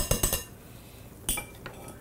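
Metal potato masher clinking against a glass mixing bowl while mashing potatoes: a quick run of taps at first, then quieter, with one more clink past the middle.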